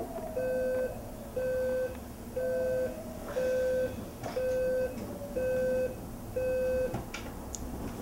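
Alarm clock beeping: seven short, even, identical beeps, about one a second, that stop about seven seconds in, followed by a couple of clicks.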